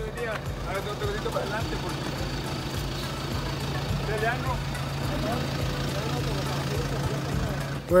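Turbo-diesel engine of a Toyota Fortuner SUV idling with a steady low hum, with people's voices faint over it.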